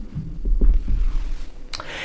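Low hum with soft throbbing thuds and a couple of faint clicks in a pause between a man's sentences.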